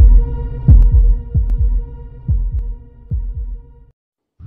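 Heartbeat sound effect from a song's intro: deep double thumps, each dropping in pitch, over a steady electronic hum. The beats slow and fade, then cut to silence just before the end.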